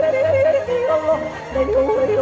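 A woman yodeling live into a microphone, flipping rapidly back and forth between two notes over a musical backing with a steady low beat. The yodel breaks off briefly near the middle and then resumes, swinging between a lower pair of notes.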